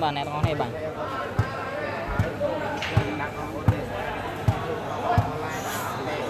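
A volleyball bounced on the court floor about seven times at a steady pace, a dull thud a little under once a second, over the murmur of talk in a large hall.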